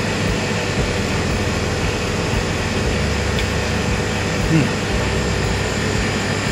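Steady hiss with a low hum from air conditioning in a dining room, unchanging throughout. A short hummed "mm" of approval comes about four and a half seconds in.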